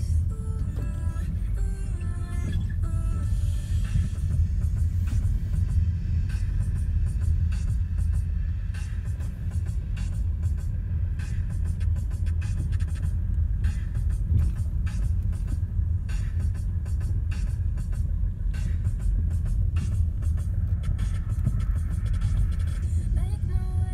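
Steady low rumble of a car on the move, heard from inside the cabin, with music playing over it.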